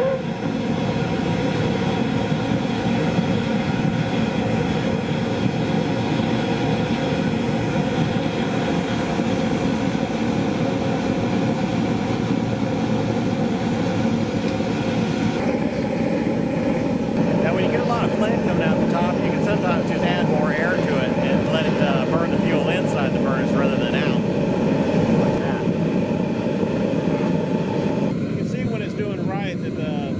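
Forced-air diesel burner of a homemade drum furnace running: a loud, steady rush of flame and air with the whine of its three-stage vacuum-cleaner-motor blower. The whine steps up slightly in pitch about halfway through.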